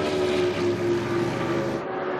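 Stock race car's engine running at speed, a steady drone that sinks slightly in pitch as the car moves away, thinning out near the end.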